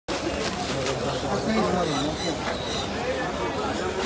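People talking indistinctly against busy outdoor background noise, with a few faint knocks.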